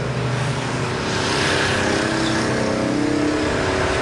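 Steady motor drone of a pump draining the water from the pen, running at an even pitch throughout.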